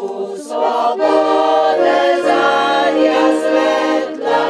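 Women's choir singing held notes in parts, accompanied by an accordion.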